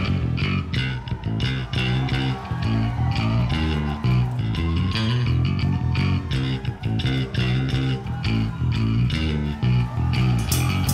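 Live prog-rock band music led by an electric bass guitar playing a quick riff of evenly repeated plucked notes, with electric guitar over it.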